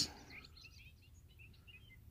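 Faint bird chirps, a scatter of short high notes, over a quiet outdoor background.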